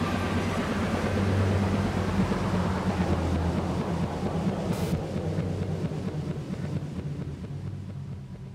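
Closing drone of a darkwave electronic track: a low sustained synth bass tone under a noisy, wind-like wash, fading out steadily.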